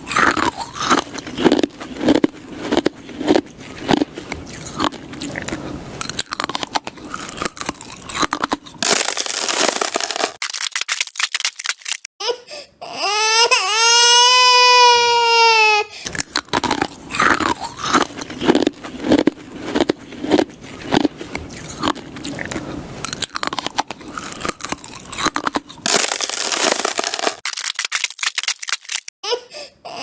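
Ice cubes being crunched and chewed in two long runs of rapid crunches. Between them comes a high wailing cry of a few seconds, and another cry starts right at the end.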